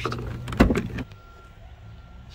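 Handling noise and a single sharp knock from a pickup truck's door being opened, about half a second in, then the sound drops to a quiet cab with a faint steady tone.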